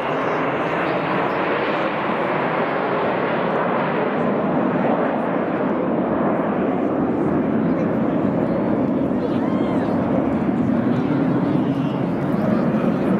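BAE Hawk T1 jets flying past in formation, a steady jet rumble, with the chatter of spectators' voices mixed in.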